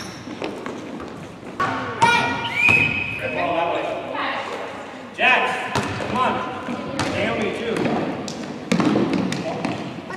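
A basketball bouncing and thudding on a hardwood gym floor during a children's game, with scattered impacts and echoing voices of kids and adults calling out across the court.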